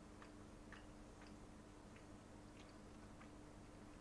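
Faint, sticky mouth clicks of someone chewing a soft piece of white suama mochi, a few irregular small clicks over a steady low hum.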